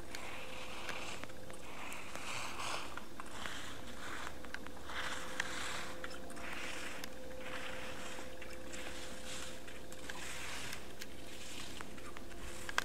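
Slalom skis carving and scraping across firm snow, one swish at each turn, about once a second, with a few sharp clicks in between.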